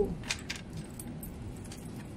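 Tarot cards being gathered by hand on a glass tabletop: a few faint clicks in the first half second, then soft handling sounds.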